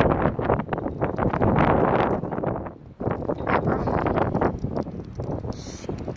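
Wind buffeting the phone's microphone in irregular gusts, with a brief lull about three seconds in.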